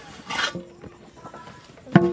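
A short rustling noise about half a second in, then near the end a sharp metallic clank of cookware with a brief ring.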